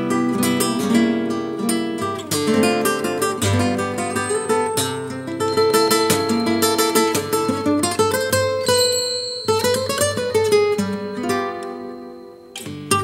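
Solo classical (nylon-string) guitar, fingerpicked: chords and single melody notes that ring on, with a brief break about nine seconds in.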